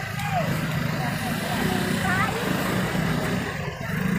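A motor vehicle engine running steadily, with people's voices in the background.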